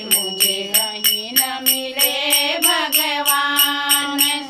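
A woman singing a Hindi nirgun bhajan (devotional song), one voice holding and bending long notes, over a steady jingling hand-percussion beat of about four strokes a second.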